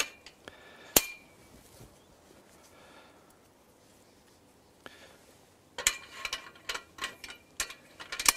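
Metal clicks and clinks from the aluminium scaffold tubes as a locking pin is fitted at a ladder joint: a sharp ringing click about a second in, then a quieter stretch, then a quick cluster of light clinks near the end.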